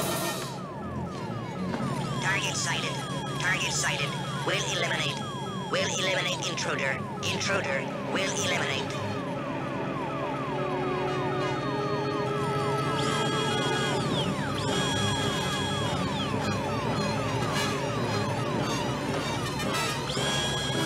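Synthesized electronic tones in a dramatic soundtrack: a fast, siren-like run of short falling blips, about five a second, with sweeping electronic chirps over them in the first half.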